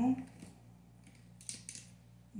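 A few faint, light clicks of makeup brushes knocking together as one is picked out, clustered about a second and a half in.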